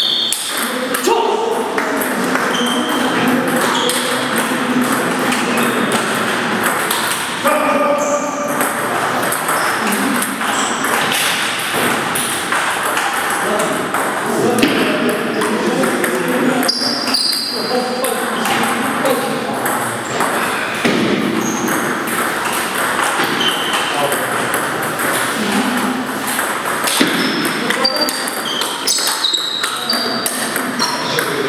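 Table tennis ball clicking off bats and the table in rallies, a quick run of sharp ticks throughout, with voices talking in the background.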